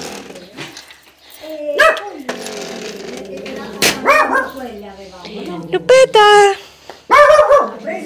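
A dog barking several times in short, high calls, the loudest near the end, while a screen door is pushed open with a click of its frame.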